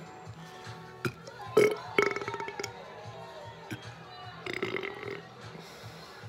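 A man belches loudly, a rough drawn-out burp about a second and a half in, then a softer one later, over faint background music.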